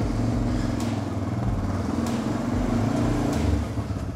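Honda NX650 Dominator's single-cylinder four-stroke engine running steadily at low speed as the motorcycle rolls along.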